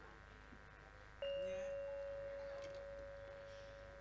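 A single struck gamelan note about a second in: metal ringing on one steady pitch and fading slowly over the next few seconds.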